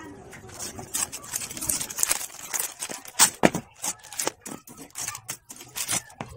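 Thin plastic kit packaging crackling and rustling as bagged plastic runners are cut open and unwrapped, with a dense run of irregular crinkles and clicks, loudest a little after the middle.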